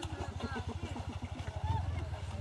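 A small boat engine running steadily with a fast, even low beat, with people's voices talking in the background.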